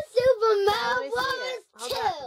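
A child's high-pitched voice in a long, wavering, sing-song exclamation, then a shorter cry that falls in pitch near the end.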